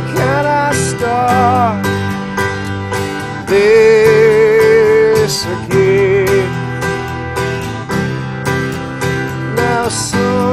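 Live acoustic band music: a steadily strummed acoustic guitar over held keyboard chords, with a wordless sung melody. Its longest and loudest note, held with vibrato, comes about halfway through.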